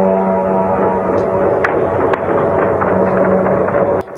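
Air-raid siren sounding a steady, held tone, loud, with a few sharp cracks between about one and two seconds in.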